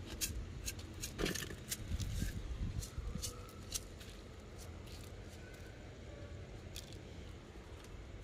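Scattered light clicks and rustling, thickest in the first few seconds and sparser after, over a low handling rumble.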